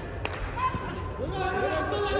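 Several voices talking at once in a large arena hall, with one sharp knock a quarter of a second in. The talk grows busier after the first second.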